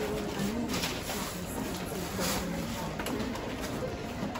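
Indistinct murmured voices in the background, with scattered light clicks and rustles of items being handled.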